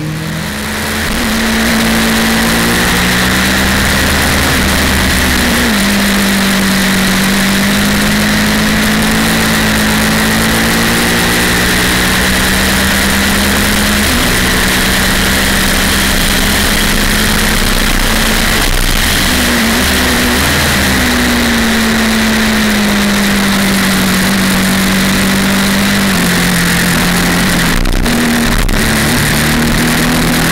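2011 Triumph Speed Triple's three-cylinder engine heard from an onboard camera at track speed, holding a high, steady note that steps abruptly in pitch a few times, over a constant rush of wind. The sound fades in over the first two seconds.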